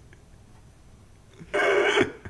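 A quiet pause, then a man's high-pitched burst of laughter starting about one and a half seconds in.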